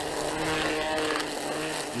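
Milwaukee M18 brushless battery-powered string trimmer running in its high-speed mode, the line cutting thick grass with a steady buzzing whine.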